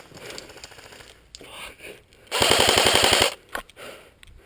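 Airsoft rifle firing a full-auto burst of about a second, roughly a dozen shots in a fast even rattle, loud and close.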